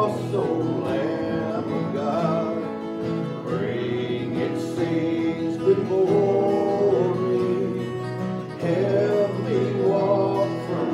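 A man singing a hymn to his own strummed acoustic guitar.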